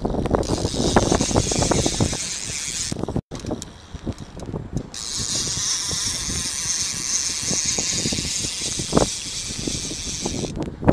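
Fishing reel being cranked while a fish is played on the line, with irregular clicking and rattling handling noise. The sound drops out briefly about three seconds in, and a steady high hiss runs underneath from about five seconds on.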